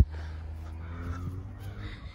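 Steady low outdoor rumble with a few faint, steady engine-like tones over it.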